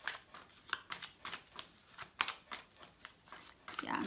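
A deck of baralho cigano (Lenormand) cards shuffled by hand: a run of irregular soft card flicks and taps, roughly three a second.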